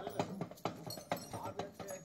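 Ḍāklā drum beaten in a steady rhythm of sharp knocks, with a voice singing a short wavering line about halfway through.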